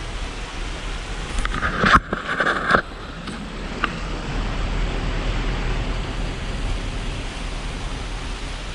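Steady rushing, bubbling noise of a mineral hot-spring pool, with wind rumble on the microphone. There is a brief louder scuffing noise about two seconds in.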